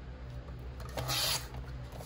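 A paper trimmer's sliding blade carriage is drawn once along its rail, cutting through a sheet of paper with a short rasp about a second in.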